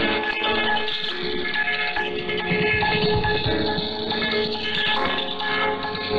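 Station music from Radio Thailand's shortwave broadcast, with held, steady musical notes, opening the Japanese-language service. It is received in AM over a shortwave radio, so the audio is narrow, with nothing above about 4.5 kHz.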